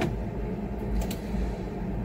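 Two faint computer keyboard clicks about a second in, over a steady low background hum.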